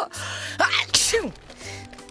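A voice-acted cartoon sneeze: a building 'ah... ah' and then a loud 'choo' about a second in, tailing off in a falling voice, over light background music.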